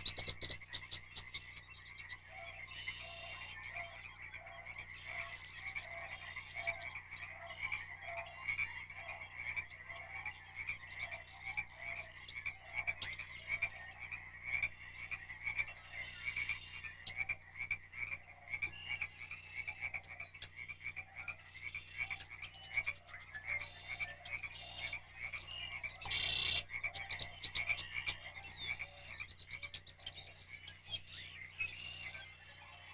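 A chorus of frogs calling: a steady, rhythmically pulsing high trill throughout, with a lower repeated croak in the first half, and a brief louder burst near the end.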